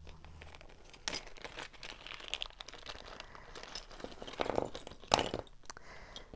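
Small plastic parts bags crinkling and rustling as they are handled and opened, with a louder clatter about five seconds in as Lego pieces are tipped out onto the paper on the table.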